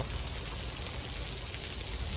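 Steady outdoor background noise: an even hiss with a low rumble underneath.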